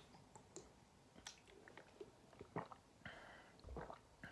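Faint swallowing and wet mouth clicks from a person drinking water from a bottle, otherwise near silence, with a short breath out near the end.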